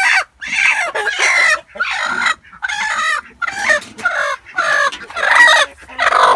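A broody hen giving a run of loud, harsh squawks, about eight short calls over six seconds, as a hand reaches into her nest box to take her out: the protest of a broody hen disturbed on the nest.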